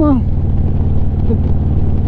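Harley-Davidson Street Glide's V-twin engine running steadily at cruising speed, a deep even drone with a faint hiss of wind over it.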